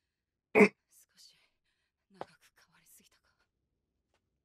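A person's brief, sharp vocal sound about half a second in, followed by faint breathy, whispered mouth sounds and a small click.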